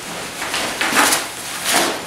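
Nylon rucksack fabric rustling and scraping as the pack is handled with a laptop inside, in two louder swishes, one about a second in and a shorter one near the end.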